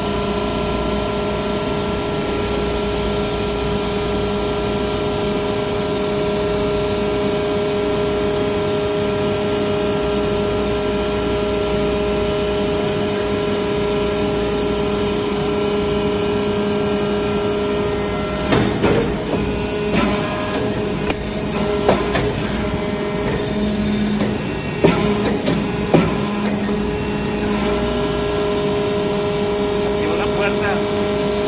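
Hydraulic metal-chip briquetting press running, its hydraulic pump giving a steady hum. In the last third come a series of sharp clicks and knocks as the press cycles and pushes out a finished briquette.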